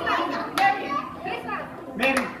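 A group of people talking and calling out over one another, with children's voices among them, and a short sharp click about half a second in.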